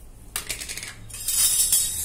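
A hand working dry gram flour in a stainless steel bowl, fingers scraping and knocking the metal. There is a short metallic clatter about a third of a second in, then a louder dry, hissing scrape in the second half.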